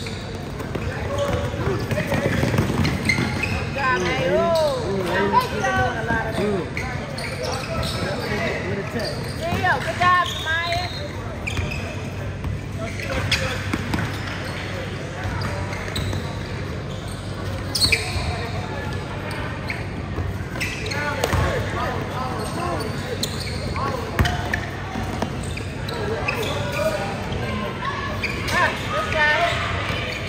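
Game sounds of a basketball court in a gym: a basketball bouncing on the hardwood floor, with sharp thuds about 18, 21 and 24 seconds in, among indistinct calls and shouts from players and spectators.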